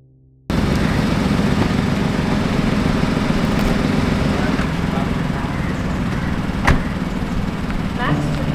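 A small hatchback car's engine running close by over steady street noise, with a car door shutting once as a single sharp thump near the end.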